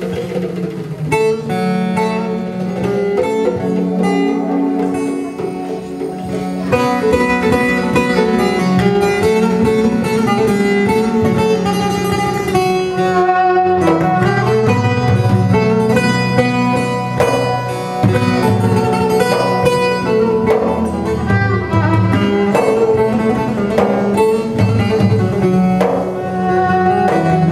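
Live Turkish folk ensemble playing an instrumental passage: plucked bağlama and violin over keyboard with a sustained low bass and hand percussion. It fills out and grows louder about seven seconds in.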